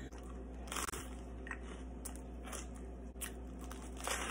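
Cheetos crunching inside a peanut butter and jelly sandwich: several faint, scattered crunches.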